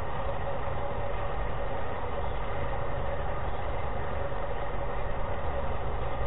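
Steady low rumble with a faint constant hum running under it, unchanging throughout: the background noise of a lo-fi recording in a pause between words.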